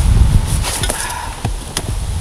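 Rustling and a few sharp knocks as a man climbs into a car's driver's seat, with a low rumble at the start.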